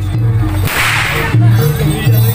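A single whip crack, a loud burst lasting under a second, about two-thirds of a second in, from a pecut (the plaited whip of Javanese jaranan dance), over jaranan music with a repeating low bass figure.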